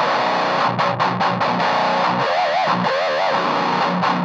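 Heavily distorted electric guitar playing a djent riff through a Revv Generator 100P amp head, its tone set for dry, tight palm mutes with the mid-scoop switched off for more midrange. Two wavering vibrato notes ring out in the middle, and the result is called beefy but not too juicy.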